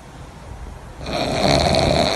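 A pug breathing noisily through its short, flat nose, with a snore-like sound while awake. It gets much louder about a second in.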